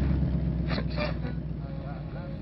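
Car engine idling, a low steady running sound that slowly fades, with faint voice fragments over it.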